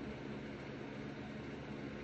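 Steady background hiss with a low hum, with no distinct events.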